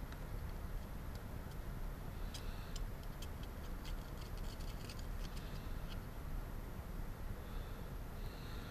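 Faint crackling and ticking from a solder joint as a wire is soldered onto a small power switch terminal with a soldering iron, clustered in the middle few seconds, over a steady low hum.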